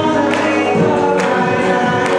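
A pop song performed live: singing over backing music, with a steady beat of sharp hits roughly every 0.85 s.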